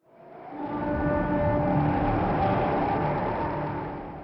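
Transition sound effect: a noisy swell with a few faint steady tones in it. It fades in over about a second, holds steady, and fades away near the end.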